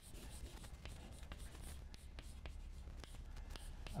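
Chalk writing on a blackboard: a run of faint, irregular taps and scratches as letters are chalked up.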